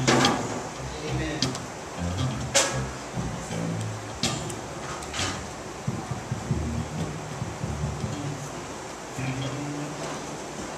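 A sung note fades out at the start. Low, indistinct voices murmur through the rest, with three sharp clicks spread across the middle.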